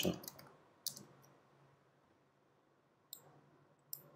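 A few separate, short computer mouse clicks, about a second in and again just after three seconds and near the end, over faint room hum.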